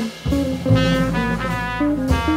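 Jazz quartet playing: a trumpet carries a line of short, changing notes over guitar, double bass and drums.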